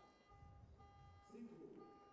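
A faint, steady electronic beep tone that cuts out twice and comes back, over a low murmur of voices.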